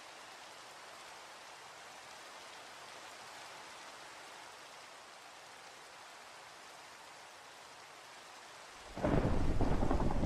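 Steady rain falling, then about nine seconds in a sudden loud roll of thunder breaks over it.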